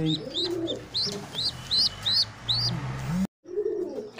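Pigeons calling: low, arching coos under a rapid run of short, high, rising peeps, about four a second, typical of a squab's begging cheeps. The sound cuts out abruptly for a moment near the end.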